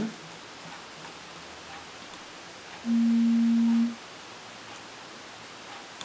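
A single electronic beep, one steady low tone lasting about a second, from the Hubsan Zino Mini Pro drone setup as the drone is switched off.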